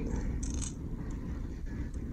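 Steady low background hum of a small room, with a faint brief rustle about half a second in.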